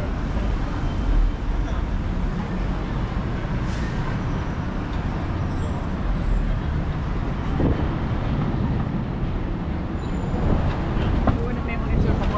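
Busy city street ambience: a steady low rumble of road traffic from the avenue, with passing pedestrians' voices now and then.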